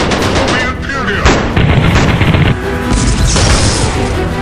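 Sound-effect gunfire from a storm bolter in rapid bursts of shots over a dramatic music score, with a short pitched cry about a second in and a hissing blast near the end.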